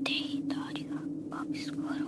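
A voice whispering a few short words over a steady low drone.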